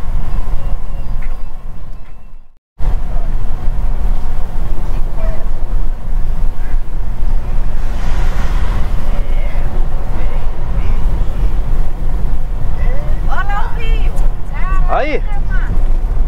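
Steady low rumble of engine and tyres heard from inside a car driving at highway speed. The noise fades to a moment of silence about two seconds in, then picks up again unchanged.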